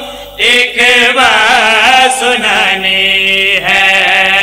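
A group of men chanting a Muharram lament (noha) in unison through microphones and a PA. They hold long, wavering notes, with brief pauses for breath just after the start and near the end.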